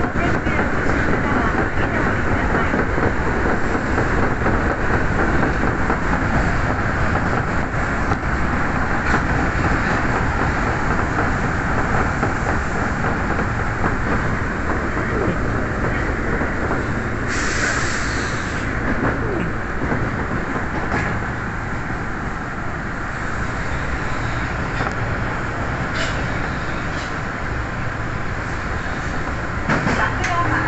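Osaka Metro Sennichimae Line subway train running through a tunnel, heard from inside the leading car: a steady rumble of wheels and running gear on the rails, with a short high hiss about 17 seconds in. The noise eases in the second half as the train slows into a station.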